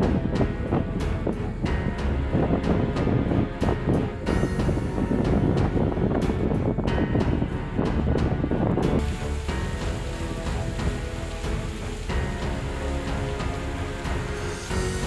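Background music over loud, gusting wind buffeting the microphone; the wind noise drops away about nine seconds in, leaving the music.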